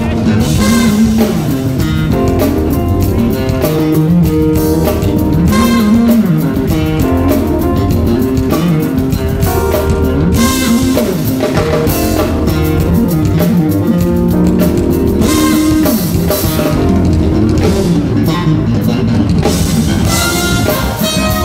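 Live jazz-funk band playing: an electric bass line at the front over a drum kit and keyboards, as a steady groove.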